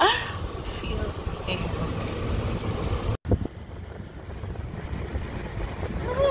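Low rumble of a car heard from inside the cabin, with wind on the microphone. It breaks off abruptly a little past three seconds in, then carries on as a similar steady low rumble.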